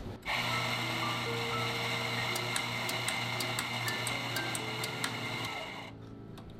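Electric coffee grinder running for about five and a half seconds: a steady motor whir with scattered small crackles, starting and stopping abruptly. Soft background music with mallet-percussion notes plays underneath.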